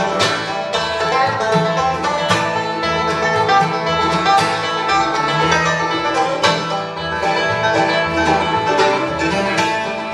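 Bluegrass band playing an instrumental break, with a banjo taking the picked lead over mandolin, acoustic guitar and upright bass.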